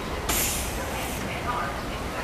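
A sharp hiss starting about a third of a second in and lasting under a second, with faint voices in the background.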